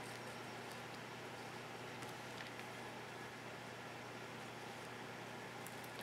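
Quiet room tone: a steady faint hiss, with a few faint light ticks as small mosaic tiles are handled and set down on a wooden card.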